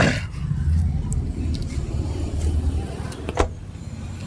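Rustling and handling noise on a clip-on microphone as a man climbs out of a car's back seat, over a steady low rumble, with a sharp click about three and a half seconds in.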